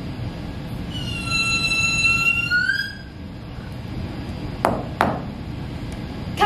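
A high-pitched squealing call, held steady for about two seconds and rising at the end. A couple of seconds later come two sharp snaps about a third of a second apart.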